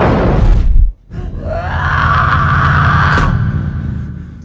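Cartoon sound effects: a loud noisy burst that cuts off abruptly just under a second in, then a long wailing groan from the animated character that rises at its start and holds for about two seconds over a low background drone.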